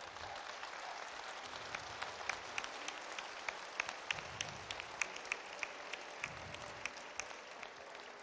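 Audience applauding steadily, with many individual claps standing out from the crowd.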